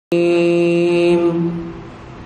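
A man's voice holding one long chanted note in the style of Quran recitation. It starts abruptly, wavers slightly, then fades out about a second and a half in.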